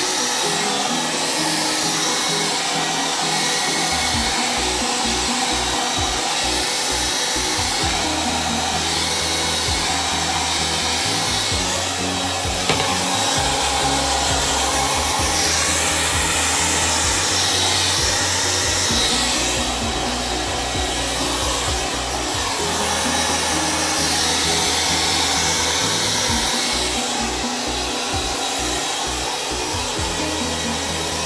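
Handheld hair dryer blowing steadily through damp hair as it is worked with a round brush, over background music with a slow-changing bass line.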